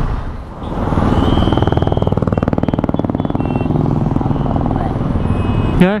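A motor vehicle engine running close by with a fast, even pulsing beat, swelling louder about a second in. A brief high-pitched beep sounds over it shortly after.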